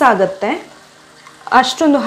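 A woman's speaking voice for about half a second at the start and again near the end, with a quieter pause between.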